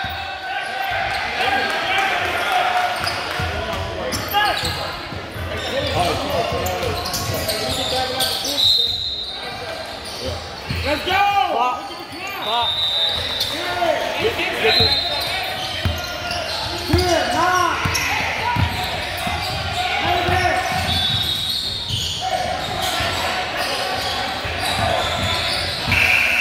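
A basketball game on a hardwood gym floor: the ball bounces and dribbles, sneakers give brief high squeaks several times, and players and spectators shout, all echoing in the large hall.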